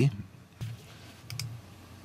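Computer mouse clicking: one sharp click about half a second in, then a quick double click, as browser tabs and links are clicked.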